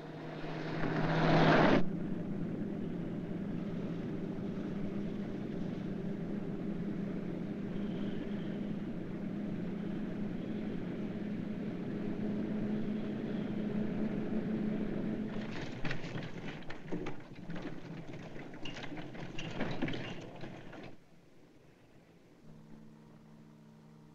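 Car engine running at speed on the highway, a steady drone with road noise, after a louder rush in the first two seconds. In the last few seconds it turns into irregular clattering knocks that cut off suddenly.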